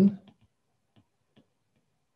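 A few faint, sparse ticks of a stylus tip tapping a tablet screen while handwriting, after a man's word trails off at the start.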